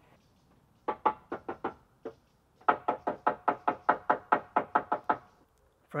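Rapid knocking: a short run of about five knocks, a brief pause, then a longer run of about fifteen knocks at roughly six a second.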